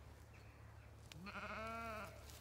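Zwartbles sheep giving a single wavering bleat, just under a second long, starting a little after a second in.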